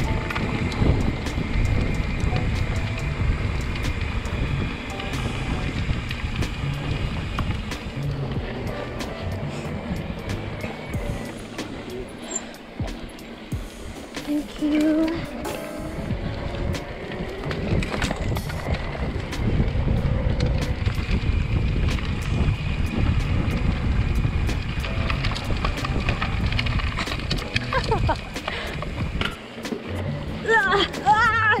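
Mountain bike riding noise from a camera on the handlebars: tyres rolling over a dirt trail with constant rattling, under background music.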